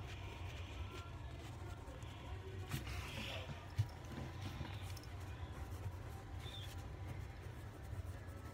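Quiet room with a low steady hum and faint scratching of a pencil on notebook paper, with a couple of light knocks around three to four seconds in.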